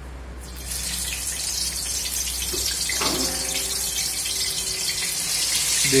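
Hot oil in a kadhai sizzling as stuffed bitter gourds (bharwa karela) are dropped in. The sizzle starts about half a second in and carries on as a steady hiss, growing a little louder.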